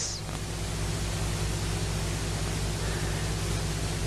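Steady hiss with a low electrical hum beneath it: the background noise of the sermon recording between the preacher's phrases.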